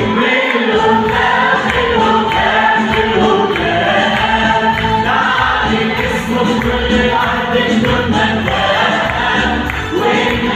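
A mixed choir of men and women singing an Arabic Christian hymn together into microphones.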